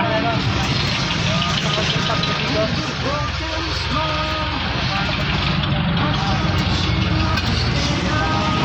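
Steady low rumble of a vehicle's engine and road noise heard from inside the cabin while it drives, with people talking over it.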